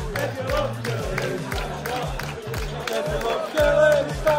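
Upbeat pop music with a steady heavy beat, about two beats a second, with a crowd of football supporters cheering and clapping along.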